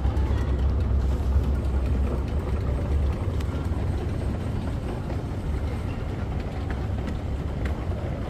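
Steady low rumble and hum of an airport moving walkway being ridden, with a haze of terminal background noise and a few faint clicks.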